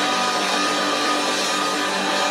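Live garage-rock band playing loudly: electric guitar and bass holding sustained notes over a steady wash of cymbals.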